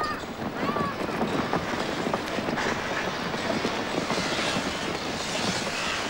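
A steady, crackling rumble with no clear pitch, the kind heard from outdoor location sound.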